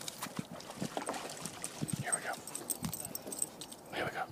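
Dogs moving in shallow lake water, with scattered light splashes and clicks, and a short whine about halfway through.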